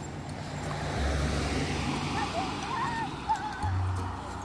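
Soft background music over the wash of traffic on a road, with a car passing by in the middle.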